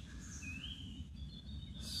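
Quiet woodland ambience: a steady low rumble with a single faint rising bird chirp about half a second in.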